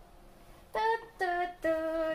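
A woman humming a short tune: three held notes, the first the highest, beginning about three-quarters of a second in.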